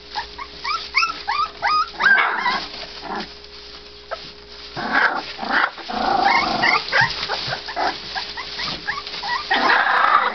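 Three-week-old American bulldog puppies whining and squealing. A string of short, high, rising squeaks comes first, then louder overlapping cries about two seconds in, again around five to seven seconds, and near the end.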